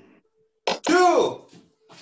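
Taekwondo kiai: a man's sharp, short shouts with his punches, one about a second in and another starting near the end.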